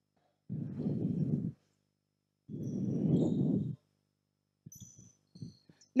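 Two breaths close to the microphone, each about a second long, followed by a few faint clicks near the end.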